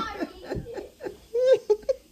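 A person laughing in a few short bursts, softer than the laughter just before, with a brief burst about one and a half seconds in.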